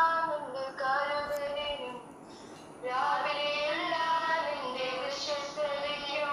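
A high voice singing a slow melody in long held phrases, pausing for breath about two seconds in before the next phrase.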